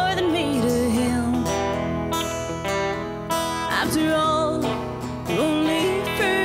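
A woman singing a slow country-Americana song over a strummed acoustic guitar, holding and bending long notes between phrases.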